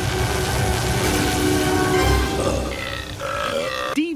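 Cartoon sound effects over music: a loud, dense rush of noise with a low rumble underneath. A few higher tones come in over the last second and a half.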